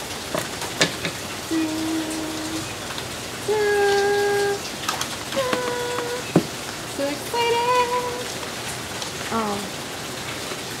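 Steady heavy rain, with sharp clicks and rustles of scissors cutting through the tape of a cardboard shipping box and the flaps being pulled open. A person hums a few held, level notes in the middle.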